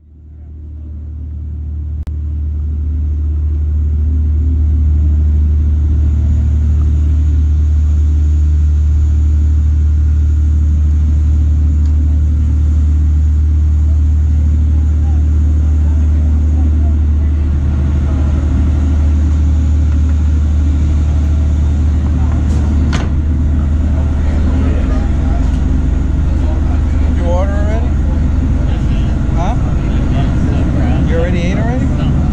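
A party boat's engines running with a steady low drone, heard inside the passenger cabin. The drone fades in over the first few seconds, and voices talking in the cabin are heard under it in the second half.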